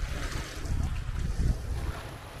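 Wind rumbling on the microphone, with water lapping against the side of a small boat.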